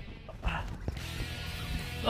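Light spinning reel working under the strain of a hooked kingfish: a short burst of reel noise with a thump about half a second in, then a single sharp click, over a faint music bed.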